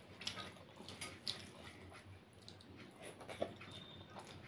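Fingers mixing rice with thin fish curry on a plate: soft wet squishing, with a few short clicks against the plate.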